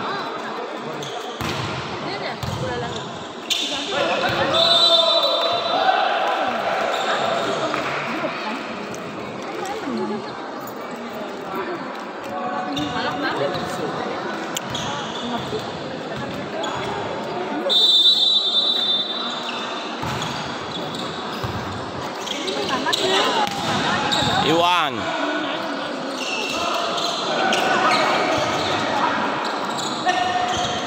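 Indoor volleyball match in an echoing sports hall: spectators and players shouting and talking, with thuds of the ball being struck. Two short, high whistle blasts, about four seconds in and again at about eighteen seconds, typical of a referee's whistle marking the serve or the end of a rally.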